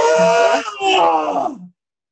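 A woman's drawn-out, mock groan of aversion ('ugh'), voiced in two pushes and stopping abruptly about one and a half seconds in.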